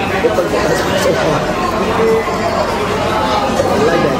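Speech: a man talking, over the background chatter of diners in a busy coffee shop.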